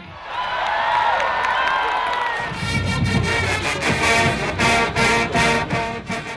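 Crowd cheering, then from about two and a half seconds in a pep band playing with a steady drum beat.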